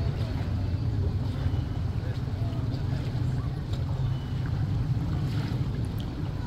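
Outboard motor of a small fishing boat running at low speed as the boat motors slowly in toward the dock: a steady low rumble.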